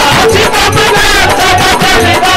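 Loud live Indian devotional band music in an instrumental passage: a fast, even percussion beat with shaker rattles under a wavering melody line.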